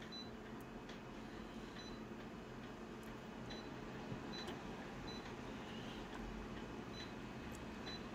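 Photocopier touchscreen key beeps: several short, high beeps at irregular intervals as on-screen buttons are tapped, over a steady low background hum.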